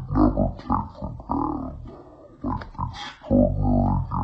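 A man's voice speaking, ending in a longer drawn-out voiced stretch near the end.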